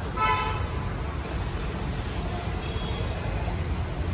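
A vehicle horn gives one short toot just after the start, over a steady low rumble of street traffic.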